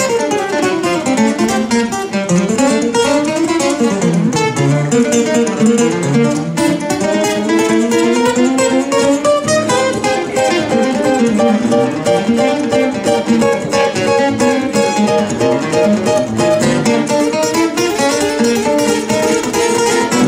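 Two acoustic guitars playing jazz, one strumming the rhythm while the other plays a moving melodic line.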